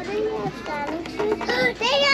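Children's high-pitched voices talking and calling out, rising and falling in pitch.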